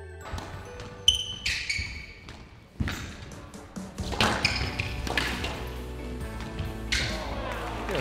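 A short ringing musical sting, then a squash rally: the ball is struck by rackets and hits the court walls with several sharp, separate hits.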